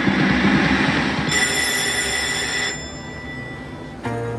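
88 Fortunes video slot machine spinning its reels: a loud, noisy whirring spin sound, with a bright ringing chime over it for about a second and a half in the middle, fading away well before the reels settle.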